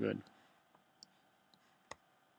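A few faint computer mouse clicks, then one sharper click near the end.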